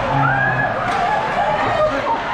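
Rink spectators shouting and calling out over one another, with ice-hockey skates scraping and stopping hard on the ice and a couple of sharp knocks.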